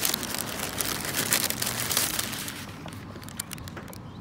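Paper burger wrapper crinkling and rustling as a burger is unwrapped by hand: a dense crackle for the first two and a half seconds or so, then a few lighter rustles.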